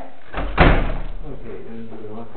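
A single loud bang about half a second in, with a short ringing tail that dies away within about half a second.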